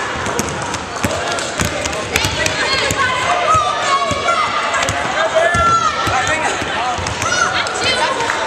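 Basketballs dribbled on a hardwood gym floor, several balls at once bouncing in an irregular, overlapping patter.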